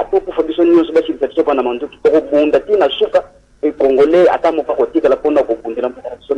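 Speech only: a caller talking over a telephone line, the voice thin and lacking bass, with short pauses about two seconds and three and a half seconds in.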